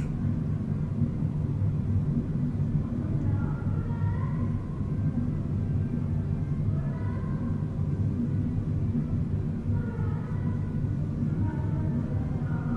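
Background music playing low under the stream: a steady bass-heavy bed with a faint melody drifting in and out on top.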